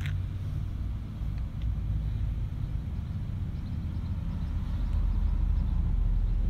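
A steady low rumble with no speech, growing slightly louder near the end.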